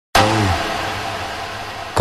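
A sudden opening hit: a short low pitched tone that bends downward after about a third of a second, over a hissy noise tail that slowly fades away.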